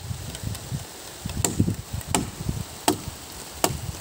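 Four sharp knocks, evenly spaced about three-quarters of a second apart, over a low rumbling.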